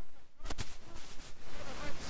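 A quiet lull of faint background noise with a single sharp click about half a second in and faint voices toward the end.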